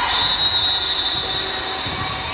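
A referee's whistle blown in one long, high, steady blast that fades out about a second and a half in, over the general noise of a sports hall.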